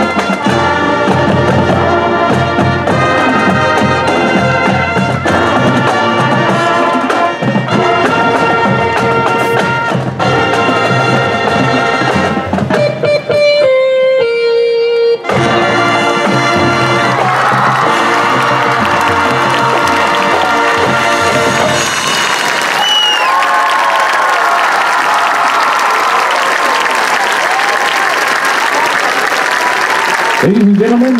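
High school marching band's brass and drums playing the close of its field show, thinning to a few held high notes for a moment near the middle before the full band comes back in. About two-thirds of the way through the music ends and the crowd in the stands applauds and cheers.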